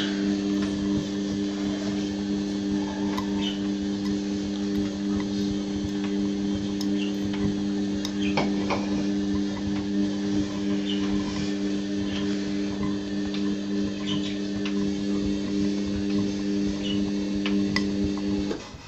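Front-loading washing machine in its wash cycle: the drum motor hums steadily while soapy laundry tumbles and sloshes, with scattered light clicks and knocks of items against the drum.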